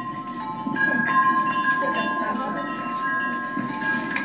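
Metal-tube wind chime ringing, several tubes sounding steady overlapping tones, with fresh strikes about a second in.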